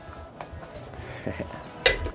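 Faint background music, then a short laugh and a single sharp clink of barware near the end.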